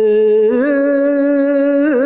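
A solo voice singing one long held note, stepping up in pitch about half a second in and dipping briefly near the end.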